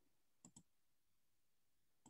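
Near silence with two faint, quick clicks about half a second in.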